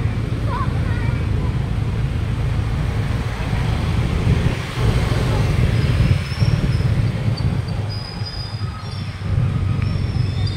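Street ambience: steady road-traffic noise from passing motorbikes and cars, with a deep rumble, and indistinct voices of people nearby.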